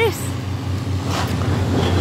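Demolition machinery's diesel engine running steadily, a low hum, with wind buffeting the microphone. A faint high whine comes in near the end.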